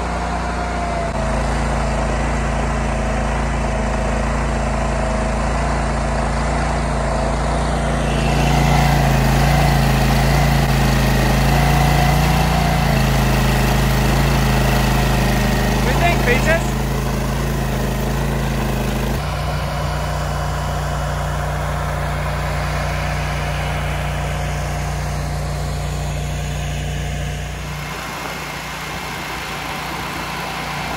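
Ditch Witch walk-behind trencher's small gasoline engine running steadily as its digging chain cuts a trench through the pasture soil. It gets louder about eight seconds in, the engine note shifts about two-thirds of the way through, and it eases slightly near the end.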